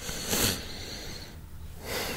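A person's short, breathy exhale about half a second in, then quiet room tone with a low hum.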